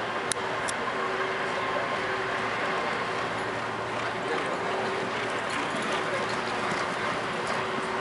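Steady outdoor background noise with a constant low hum. Two sharp clicks come within the first second, and faint hoof steps come from a racehorse walking on a dirt track.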